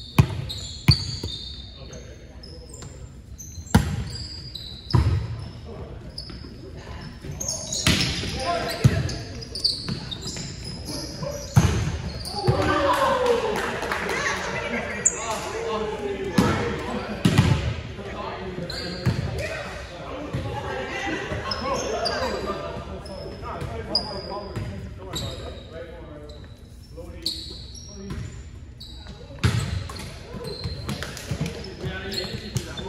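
Volleyball play in a large gymnasium: scattered sharp thuds of the ball being hit and bouncing on the hardwood floor, with short high sneaker squeaks. Players' voices call out and chatter, busiest in the middle stretch.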